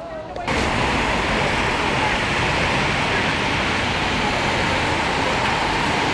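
Steady hiss of rain falling on a wet street, starting suddenly about half a second in and continuing evenly.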